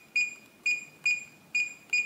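Reliabilt electronic keypad deadbolt beeping as its keys are pressed: a series of short, identical high-pitched beeps, one per key press, about two a second, as a programming code is entered.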